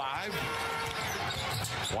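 A basketball being dribbled on a hardwood arena court, heard through a TV game broadcast under faint commentator speech.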